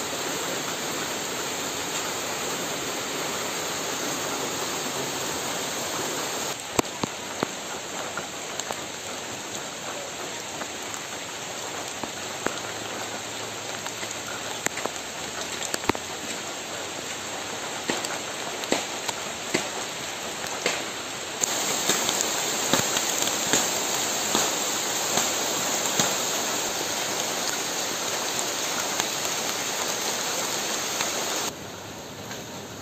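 Steady rain falling on forest leaves, with scattered sharp taps of heavier drops landing close by. The rain grows louder about two-thirds of the way through.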